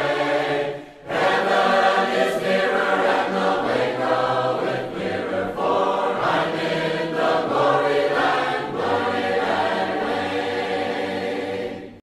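A choir singing in harmony, a cappella with no instruments, starting about a second in after a short gap and fading out at the end.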